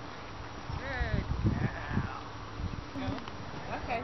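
A horse whinnies once about a second in: a wavering, falling call. Wind buffets the microphone around it, and a person's voice is heard near the end.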